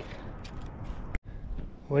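Faint outdoor background noise with a few small ticks. About a second in it breaks off with a click and a moment of dead silence at an edit cut, then carries on. A man's voice starts at the very end.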